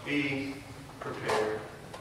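Speech only: a man preaching, in two short phrases with pauses between.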